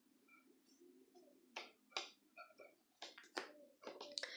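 Near silence with a few faint, short clicks from small handling noises: steel scissors cutting the yarn and being set down, and a plastic crochet hook picked up.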